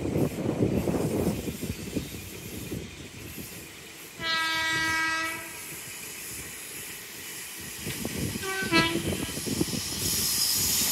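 LNER Azuma train sounding its horn on the approach: one long blast about four seconds in, then a shorter blast of two quick notes near the end. A gusty low rumble is heard in the first couple of seconds.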